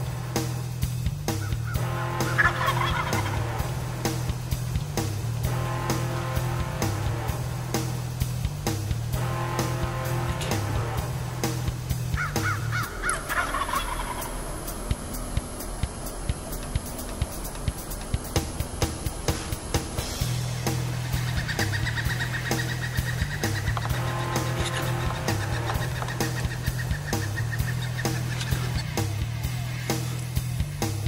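Wild turkey gobbling several times, over background music with a steady low beat.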